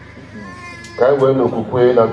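A loud human voice starts suddenly about a second in, drawn out in held, wavering notes.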